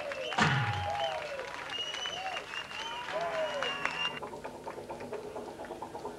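Audience applause and voices over sliding electronic tones, with one heavy drum hit that falls in pitch about half a second in. The sound thins out after about four seconds.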